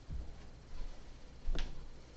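Footsteps in high heels on carpet: dull thumps about every 0.7 seconds, with one sharper click about one and a half seconds in.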